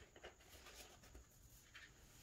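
Near silence, with faint rustling and soft handling noises of thick photobook pages being turned by hand.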